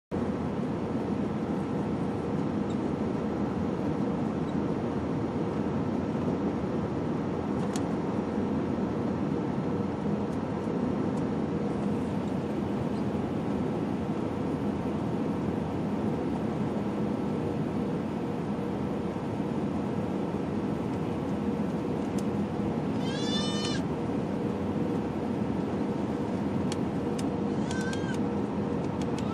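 Steady roar of jet airliner cabin noise during the approach descent, engines and airflow with a constant hum. A brief high-pitched squealing cry cuts in about five seconds before the end and again right at the end.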